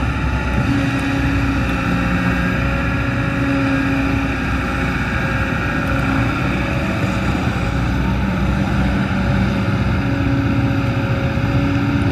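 Kobelco SK200 hydraulic excavator's diesel engine running steadily under working load as the machine digs and swings, a continuous drone with a higher tone that comes and goes several times as the boom and bucket move.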